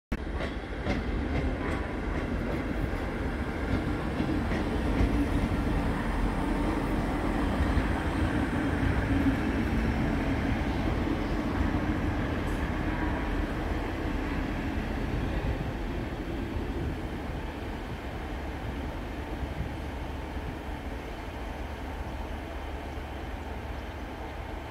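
Two-car Class 158 diesel multiple unit running past on the station tracks: a steady diesel engine drone with wheel-on-rail noise, loudest in the first half and dying away over the last several seconds.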